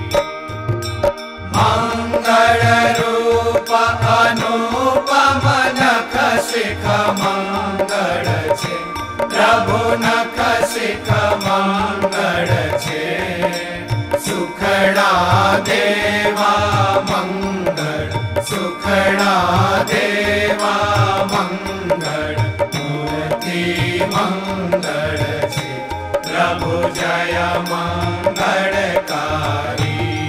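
Devotional Hindu chant sung to music with a steady low beat.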